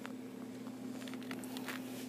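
Quiet room tone with a steady low hum and a few faint, soft footsteps.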